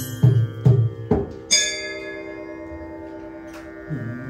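Harmonium holding a steady chord while the tabla plays a few strokes in the first second. About one and a half seconds in, a single metallic bell-like ring sounds and dies away slowly. Another low tabla stroke with a sliding pitch comes near the end.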